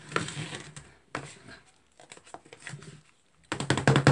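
Plastic spatulas tapping and scraping on the frozen metal plate of a rolled-ice-cream maker as Oreo cookies are chopped into the cream, in irregular light clicks and scrapes. Near the end, loud background music with a steady beat comes in.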